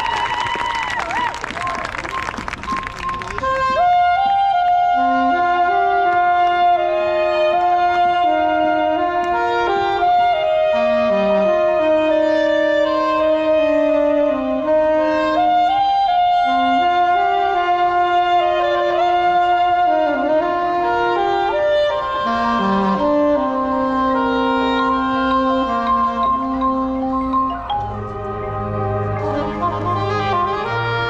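Crowd cheering and whistling for the first few seconds, then a marching band's wind section starts a slow melody of long held notes in brass and woodwinds. Low brass comes in near the end.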